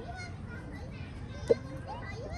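Background voices of people and children talking over outdoor ambience, with one brief sharp sound about one and a half seconds in.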